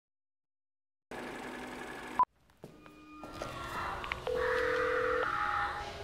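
Electronic soundtrack sound design. After about a second of silence, a steady hum with several tones cuts off with a short, sharp beep a little over two seconds in. After a brief hush, a drone of layered electronic tones swells up.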